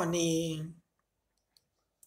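A voice reciting ends a word, followed by a silent pause broken by a few faint, sharp clicks.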